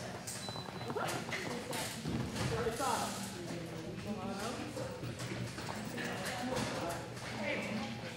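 A handler's voice calling out to a small dog over quick, irregular taps and footfalls of running on the rubber-matted floor of a large hall.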